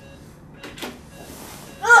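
A woman retching into a sick bowl, with one loud gagging cry near the end. She is nauseated from low blood pressure after spinal anaesthesia.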